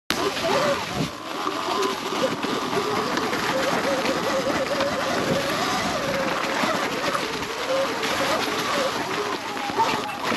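2021 Sur-Ron Light Bee X electric dirt bike riding on a leaf-covered trail: a faint motor whine that wavers up and down in pitch with the throttle, over a steady rush of tyre noise on wet leaves.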